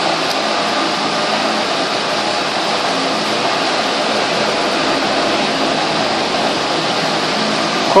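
A steady, even rushing noise that holds at one level throughout. No separate sound of the comb parting the hair stands out above it.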